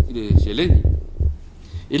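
A person speaking in Samoan, with low thumps under the words and a short pause in the second half before the talk resumes.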